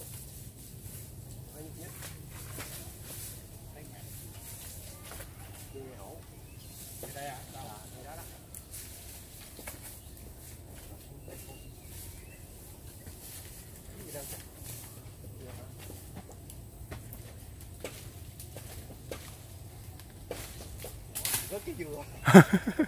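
Faint outdoor ambience: a steady low rumble with scattered small clicks and rustles, and faint voices now and then.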